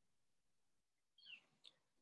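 Near silence: room tone, with a faint short sound and a tiny click a little after a second in.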